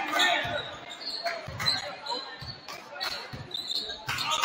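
Basketball being dribbled on a hardwood gym floor, low bounces about two a second, echoing in the hall under voices and shouts.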